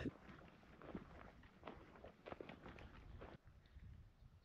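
Near silence, with a scattering of faint, short soft crunches and ticks.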